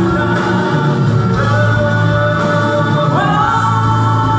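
A live rock band plays a song with singing, over electric guitars, bass and drums. A long held note slides up to a higher pitch about three seconds in.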